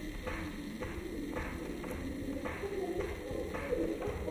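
Cooing bird calls, like those of a dove, repeating evenly over a quiet backing in a jungle-themed dance soundtrack.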